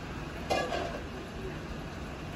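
Steady rain and wind noise of a severe thunderstorm, with one short, ringing clink about half a second in.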